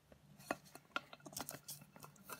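A handful of light clicks and taps as the sheet-metal dome cover of an old tremolo footswitch is lifted off its base and turned over by hand, the cover loose because its plastic threaded bushing has broken.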